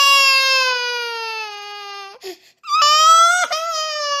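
A baby crying in two long wails. The first slowly falls in pitch and breaks off about two seconds in; the second starts shortly after and is held to the end.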